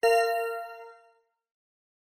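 A single bell-like chime that starts sharply and rings out, fading away over about a second. It is the cue tone that marks the end of a segment in a CCL interpreting test recording.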